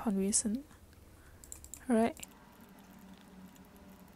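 Male voice trailing off at the start and a short spoken syllable about two seconds in, with faint clicking at the computer in the quiet stretches.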